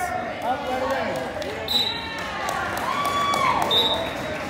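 Coaches and spectators shouting instructions in a gym, one voice holding a long shout about three seconds in, with dull thumps of bodies on the wrestling mat underneath.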